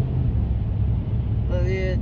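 Steady low rumble of road and engine noise inside a moving vehicle's cabin on a wet highway. A man's voice cuts in briefly near the end.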